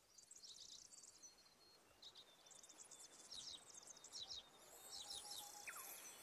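Faint recorded birdsong: scattered high chirps and quick trills, with one falling whistle near the end.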